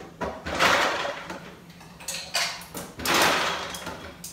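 Ice cubes clattering into a glass at the refrigerator, in two rattling bursts, the first about a second and a half long and the second shorter near the end.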